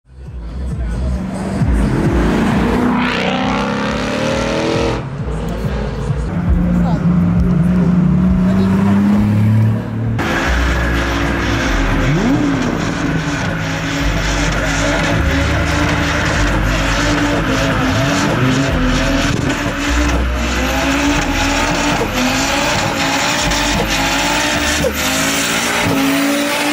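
A boxy Volvo 700/900-series saloon doing a burnout: the engine revs high while the rear tyres spin and squeal on the tarmac. The revs rise and fall over the first ten seconds, then hold high and steady.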